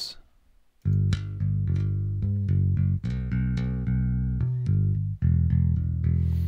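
Sampled electric bass (Ample Bass P virtual Precision bass) playing a bass line from the piano roll, starting about a second in. Its notes change articulation as key switches fire.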